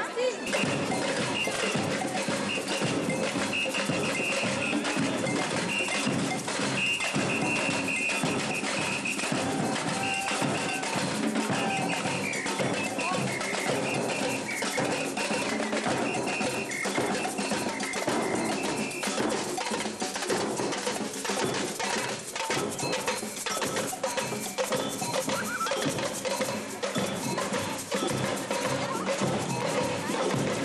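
Carnival parade percussion band playing: a bass drum and metal drums with cowbell-like metallic strikes, keeping up a dense, continuous beat.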